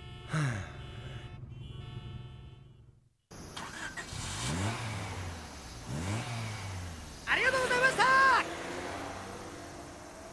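A steady car engine hum inside the cabin fades out about three seconds in. After a break, a vehicle engine note rises and falls twice over a background hum, and a man's voice cries out briefly near the end.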